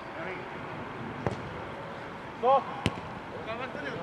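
A football kicked twice on an artificial-turf pitch, two sharp thuds a little over a second in and near three seconds. A short loud shout from a player just before the second kick is the loudest sound, with other players' brief calls near the end.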